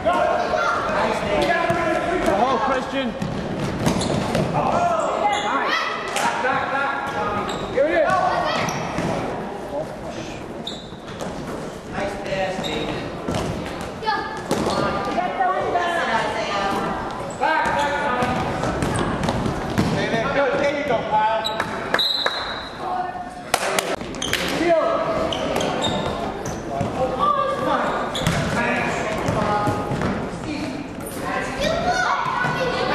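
A basketball game on a hardwood gym floor: the ball bouncing as it is dribbled, over indistinct voices of players and onlookers calling out, echoing in the large hall.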